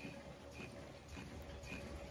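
Automatic face-mask making machine running: a steady low hum with a light click repeating about twice a second, in step with its rate of roughly 100–120 masks a minute.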